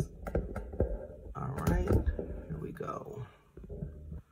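Handling noise from a cardboard Bible box: a run of light clicks, knocks and rubbing as it is picked at and opened, with a brief unclear murmured voice in the middle.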